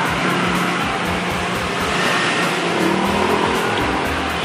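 Steady street traffic noise, with background music underneath.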